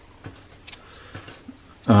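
Faint, scattered light clicks of 3D-printed PLA plastic parts being handled and pulled apart in the fingers; a man's voice starts right at the end.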